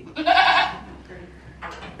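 A miniature goat bleating once, a wavering call of just under a second early on.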